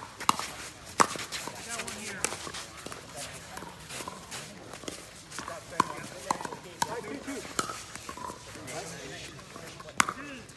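Pickleball paddles hitting a hard plastic ball in a rally: sharp pops at uneven intervals, one near the start and a quick string of them from about six to eight seconds in. Voices talk underneath.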